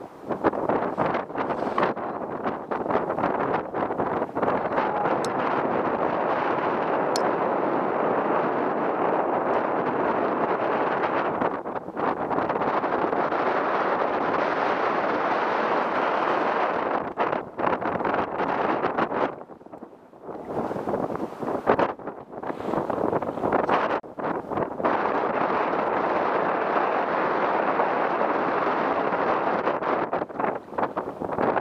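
Strong wind buffeting the camera microphone: a continuous rushing noise that drops away briefly a few times, most clearly about two-thirds of the way through.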